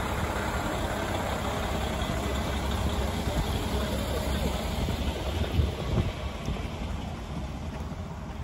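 KiHa 40 diesel railcar rolling slowly along a station platform and coming to a stop, its diesel engine rumbling steadily. A couple of knocks come about five and a half to six seconds in, and the sound eases a little near the end as it halts.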